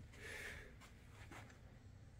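Near silence: room tone, with a faint soft hiss in the first half second.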